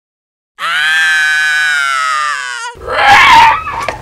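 A loud scream held for about two seconds, its pitch sagging slightly and wavering as it ends, followed by a shorter, harsher shriek.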